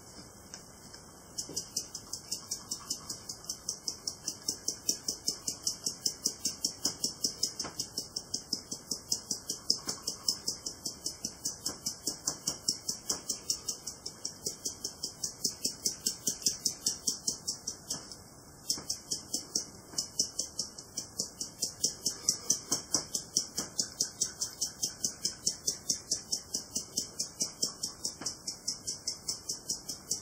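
Toasted sesame seeds rattling in a small glass spice jar shaken in quick, even strokes, several a second, to sprinkle them, with a short break a little past halfway.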